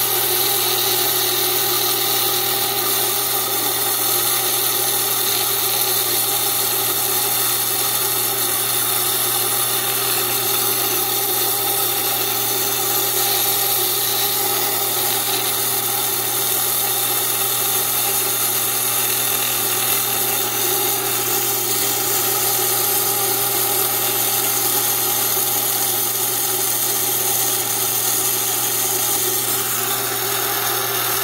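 Electric wet saw cutting agate: a steady motor hum under a high, even grinding tone as the stone is hand-fed into the water-cooled blade.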